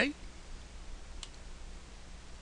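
A single computer mouse click about a second in, over a low steady hum and hiss. The last of a spoken word trails off at the very start.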